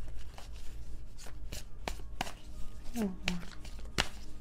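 A tarot deck being shuffled by hand: a run of crisp, irregular card flicks and snaps, with a brief hummed voice about three seconds in.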